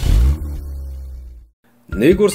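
A stinger sound effect: a sudden hit followed by a deep rumble that fades and cuts off about a second and a half in.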